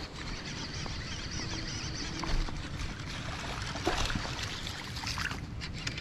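Water splashing and lapping at the bank as a hooked bass is played and brought in by hand, with scattered light clicks of rod and reel handling.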